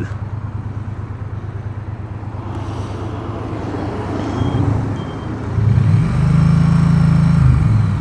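Triumph Bonneville T100 parallel-twin engine running at low revs under way. About six seconds in its note swells louder for about a second and a half as the throttle opens, then eases back.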